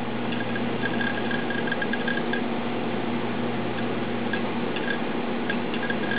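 Small laptop hard drive seeking as software loads: clusters of quick, faint ticks over a steady low hum.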